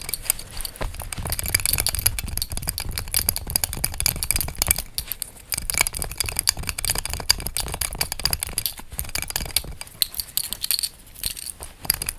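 Fingernails and ringed fingers tapping and scratching on an oval metal belt buckle with a raised rose emblem, making quick, irregular light clicks and clinks. A low rubbing rumble from the hands runs under the clicks for most of the time.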